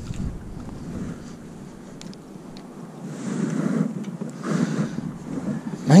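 Wind and handling noise on a chest-mounted microphone: a rough rustling that swells in the middle, with a few faint clicks.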